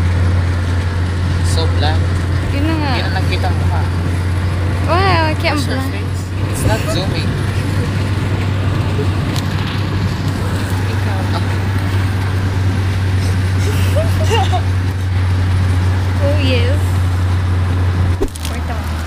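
Steady low rumble of a car's interior while driving at road speed, with faint passenger voices now and then.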